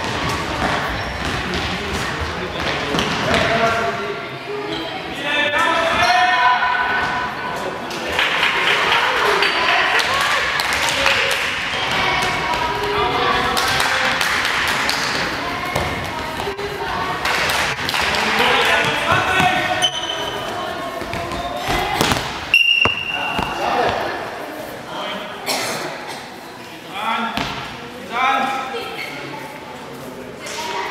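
Indoor handball game: the ball bouncing and thudding on the sports-hall floor among shouting voices, all echoing in the large hall. A sharper knock comes about two-thirds of the way through.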